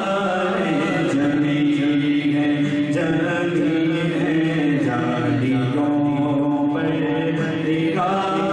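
Unaccompanied Urdu naat sung by a male voice, a devotional hymn in long drawn-out notes that waver and bend in pitch.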